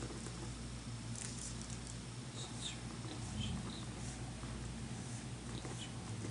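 Pen writing on paper: faint, short scratches of the pen tip at irregular moments, over a steady low hum.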